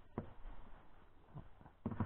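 A few faint, scattered knocks and bumps in an inflatable boat.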